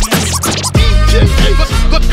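Hip hop beat with turntable scratching: a record pushed back and forth in short rising and falling sweeps over heavy bass and drums.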